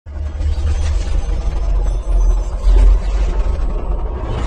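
A loud, deep rumble with a noisy hiss above it, starting abruptly and swelling to its loudest a little under three seconds in.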